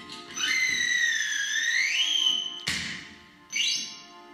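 Analog synthesizer playing a whistle-like gliding tone that dips, rises and holds, then cuts off with a sharp click; near the end a short upward sweep follows. A steady electronic drone runs underneath.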